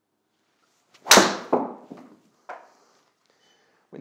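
A Honma XP-1 driver strikes a golf ball about a second in: one sharp, loud crack off the clubface with a short ringing tail. Two softer knocks follow within the next second and a half.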